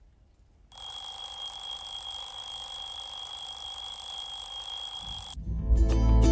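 A timer alarm rings steadily for about four and a half seconds, marking the end of a 50-minute work session, and cuts off suddenly. Near the end, soft plucked-guitar music begins.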